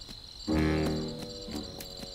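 Crickets chirping steadily as night ambience, with a short musical note about half a second in.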